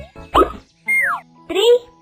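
Cartoon sound effects: a quick upward-sliding pop about half a second in, then a short downward-sliding whistle about a second in. A child-like voice starts speaking near the end.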